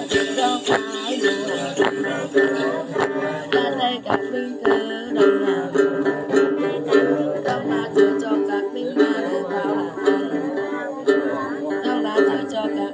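Đàn tính, the Tày long-necked gourd lute, plucked in a steady repeating pattern of notes. A cluster of small jingle bells is shaken along with it during roughly the first four seconds.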